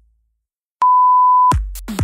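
A workout interval timer's countdown ending in one long, loud beep about a second in, signalling the start of the next exercise. Electronic dance music with a steady kick drum starts straight after the beep.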